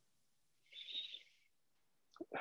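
Near silence, with one brief, faint breathy vocal sound from a person about a second in.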